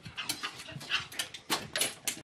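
Whippet moving about and panting at a door, with irregular sharp clicks and scuffs from its claws and feet.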